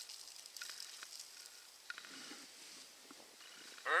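Fine, dry soil trickling out of an open hand, a faint hiss.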